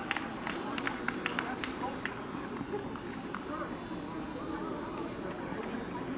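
Stadium field ambience: a steady background hum with faint, indistinct distant voices and a few sharp taps in the first two seconds.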